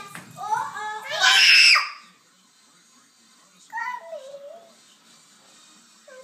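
Young child's high-pitched voice: sing-song vocalizing that rises into a loud scream in the first two seconds, then a short call a couple of seconds later.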